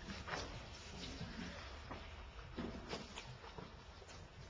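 Faint classroom background: low room hum, scattered small clicks and knocks, and murmur of indistinct distant voices.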